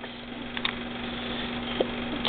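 A steady low hum over light hiss, with two faint light clicks as small plastic game tiles are handled.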